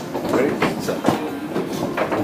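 Foosball table in play: the rods sliding and rattling as they are worked, with quick sharp clacks and knocks of the ball and the men.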